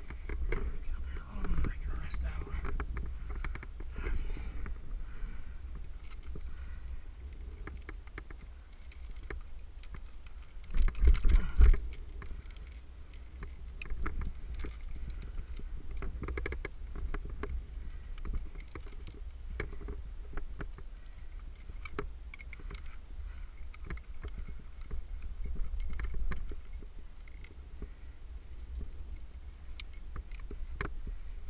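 Metal climbing gear (carabiners and quickdraws) clinking and scraping against granite during a lead climb, with many small clicks and knocks. A steady low rumble of wind runs on the microphone, with a loud rumbling burst about eleven seconds in.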